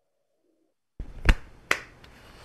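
About a second of dead silence, then a video-call microphone opens on low room noise and picks up two sharp clicks about half a second apart.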